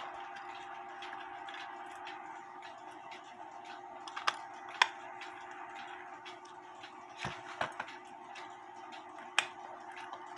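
A Lux Pendulete pendulum clock ticking steadily while a small precision driver unscrews the bolts of its back cover. A few sharper clicks from the metal tool stand out over the ticking, along with a steady background hum.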